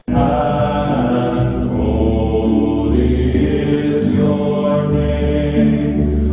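Chanted choral music with long held notes over a steady low bass, starting abruptly.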